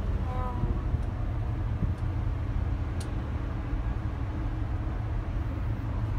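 Steady low rumble inside a moving cable car cabin, with a single faint click about three seconds in.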